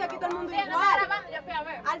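Speech only: several people talking over one another in a heated argument.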